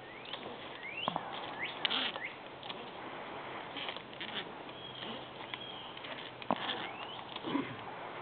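A few sharp clicks from climbing hardware as a climber moves up a rope, with scattered short rising bird chirps in between.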